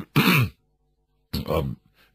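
A man briefly clears his throat, a short gruff vocal burst that falls in pitch. After a moment of silence, a brief spoken syllable follows.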